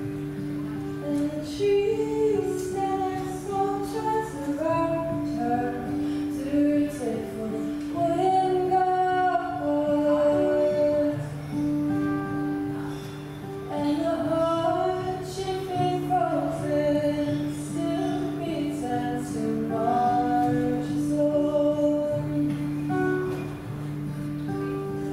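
A young woman singing a song while playing an acoustic guitar, the guitar's chords held steady beneath her sung melody.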